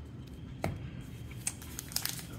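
Handling of a small stack of baseball trading cards: a few light clicks and rustles as the cards are squared up and put down, the sharpest click a little over half a second in.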